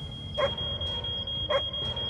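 Smoke alarm sounding one steady, high-pitched tone, with a dog barking twice over it.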